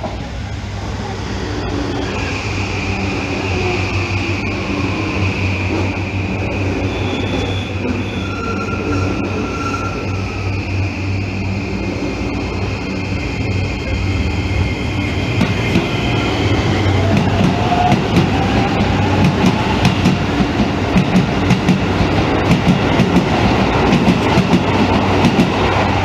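A Toei 5500-series electric train pulls into the platform and brakes, with a steady low hum and a steady high motor whine that fades after about 17 seconds. A Keisei 3000-series train then arrives on the other track, its wheels clacking over the rail joints and growing louder toward the end.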